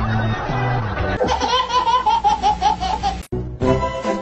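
A baby laughing in a quick run of repeated high laughs, about four a second, starting about a second in over background music. The sound cuts off sharply near the end and a new tune begins.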